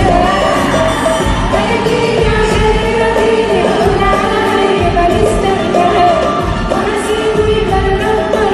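Live Arabic pop music from a stage band with a singer, heard from among the audience seating.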